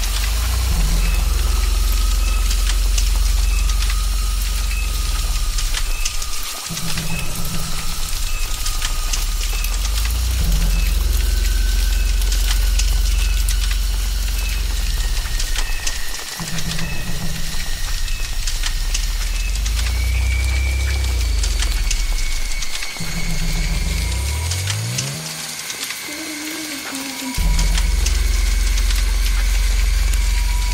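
Ominous low droning background music that swells and cuts out every few seconds, with a rising sweep near the end, over a steady high hiss.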